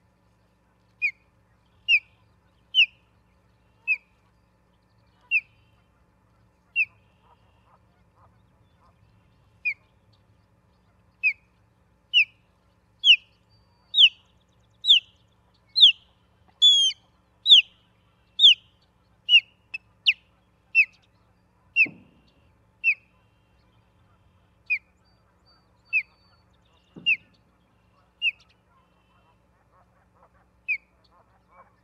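Osprey giving a long series of short, shrill whistled calls, about one a second, coming quicker and louder in the middle of the series before spacing out again.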